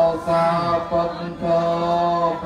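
A Buddhist monk chanting in a steady monotone, one male voice holding long level notes broken by short pauses.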